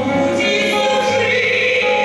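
A woman singing a song into a microphone over musical accompaniment, holding long sustained notes.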